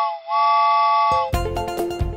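Cartoon steam-train whistle blowing two toots of a steady chord, the second about a second long, then upbeat children's music with a beat starts.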